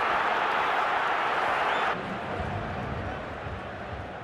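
Broadcast ambience from a rugby pitch in a near-empty stadium: a steady hiss of background noise that drops suddenly about two seconds in to a quieter low rumble with a few soft thuds.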